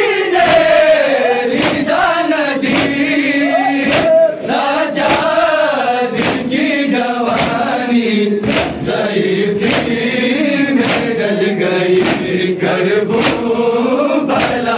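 A crowd of men chanting an Urdu noha together in chorus, with the slap of hands striking chests in unison (matam) about once a second.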